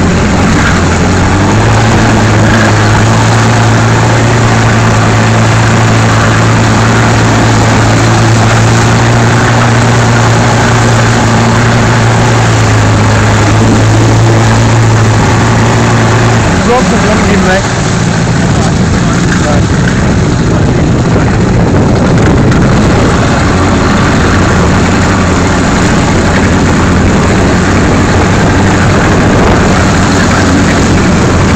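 Towing motorboat's engine running steadily at speed, its note shifting slightly about halfway through, under heavy wind rush and spray noise on the microphone.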